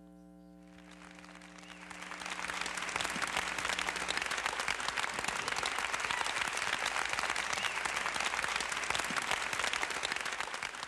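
Audience applause rising about a second in and then holding steady, over the fading final held chord of a gospel quartet's song.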